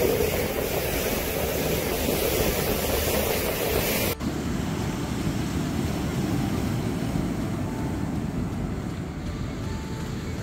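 Water rushing past a boat moving at sea, with wind on the microphone. About four seconds in it cuts to a softer wash of waves breaking on a pebble beach.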